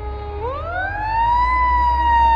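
Federal Q mechanical siren on a fire pumper winding up: a steady lower tone rises steeply about half a second in, peaks around a second and a half in, then begins to coast slowly down. A low rumble runs underneath.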